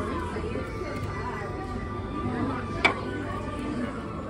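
Restaurant background: indistinct voices of other diners talking, with music playing. A single sharp clink, the loudest sound, comes a little under three seconds in.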